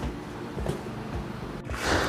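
Low, steady background noise with no distinct event, then a short breath drawn near the end.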